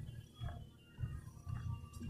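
Treadmill running at a slow walking pace: a low, steady motor and belt hum with soft footfalls on the moving belt.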